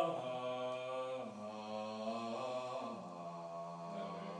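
Low male voices singing softly on long held notes, stepping to new pitches about a second in and again near the end.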